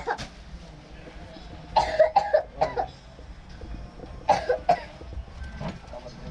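A person coughing in two short bouts, one about two seconds in and another a little past four seconds, over a low background hum.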